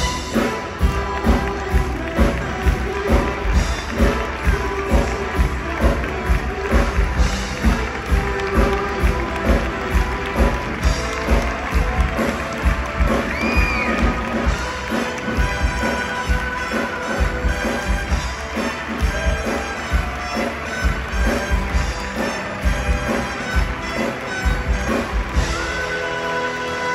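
Show music with a steady, driving beat, about two beats a second.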